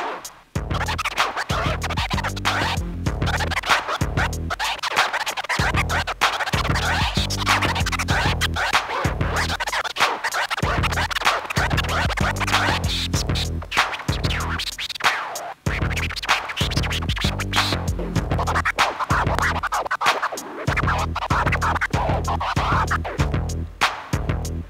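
Turntable scratching: a vinyl record cut rapidly back and forth by a scratch DJ over a looping hip hop beat with a steady bass pulse. The music drops out briefly about half a second in and again about two-thirds of the way through.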